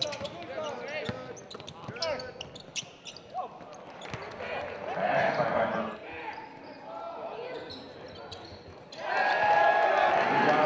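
Game sound in a gym: a basketball bounced on the hardwood court, with short sneaker squeaks and voices around the court, the voices getting louder near the end.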